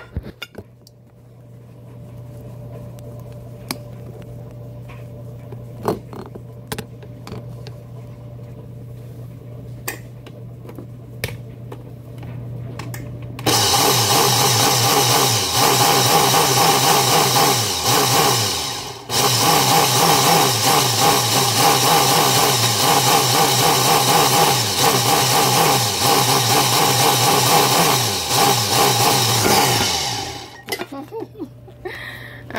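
Countertop blender puréeing raw spinach pesto. At first there is a low steady hum with a few clicks. About halfway in the motor comes on loud at high speed, cuts out briefly and starts again, and it stops at the end.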